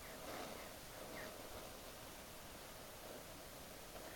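Faint steady hiss of a Borde self-pressurising petrol stove's priming flame burning off spilled fuel as the stove begins to pressurise, with a brief faint chirp about a second in.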